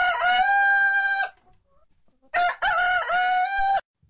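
Recorded rooster crowing twice as a wake-up sound effect. The first crow is already under way and ends about a second in; the second follows about a second later. Each ends in a long held note.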